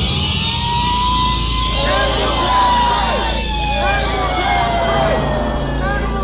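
A siren wail that holds and then slowly falls in pitch. From about two seconds in it is overlaid by the overlapping voices of a crowd.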